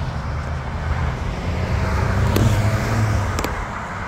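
Road traffic: cars driving through an intersection, a steady low engine and tyre rumble that swells about halfway through as a car passes close by. A couple of brief clicks come near the end.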